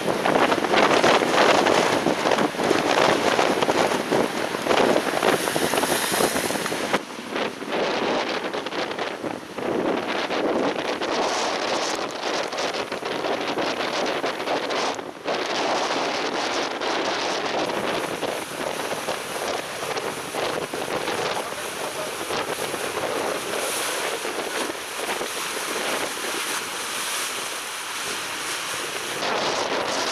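Gale-force lodos wind, about force 7, blowing hard across the microphone over a rough sea, with waves breaking. The rushing noise gusts up and down, loudest in the first few seconds, with a few brief lulls.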